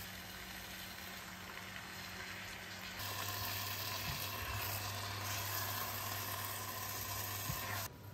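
Chicken, cabbage and rice cakes sizzling in a hot sauce-coated pan as they are stirred and turned with a spatula. The sizzle steps up louder about three seconds in and drops away just before the end.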